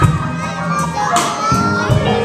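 Live blues improvisation: a drum kit and sustained low bass notes playing, with children's voices chattering over the music.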